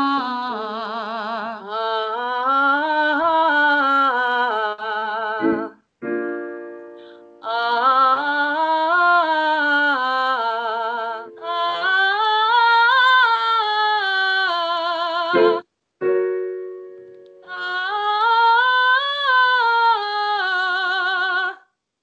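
A woman singing a vocal warm-up: rising-and-falling scale phrases with vibrato, with short piano chords between phrases setting the next pitch. The teacher hears a light chest voice, with a tiny bit of excess air on the lowest notes.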